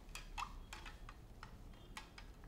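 Metal spoon clicking against a glass, a string of light, uneven clicks, as honey is spooned into lemon tea and stirred in.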